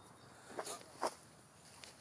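Faint footsteps on dry, clumpy dirt and grass: a couple of short, soft crunches near the middle, otherwise quiet.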